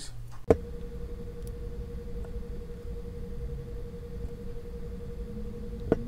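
A steady hum with low room rumble, starting after a sharp click about half a second in, and a second click near the end.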